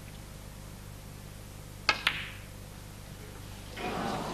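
Snooker cue tip striking the cue ball in a single sharp click, about two seconds in, with a brief ring after it, over a low steady hum. It is a safety shot played on the pink.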